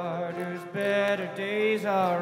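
Live bluegrass band music: a male voice sings long, held notes, gliding between pitches, over acoustic guitar and other plucked string instruments.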